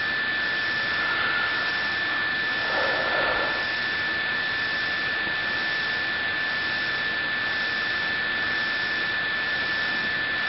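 Steady background hiss with a constant high-pitched whine running through it, and a brief faint rustle about three seconds in.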